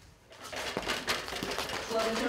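Faint, distant voices over steady background noise, coming in about half a second in after a brief near-silent gap.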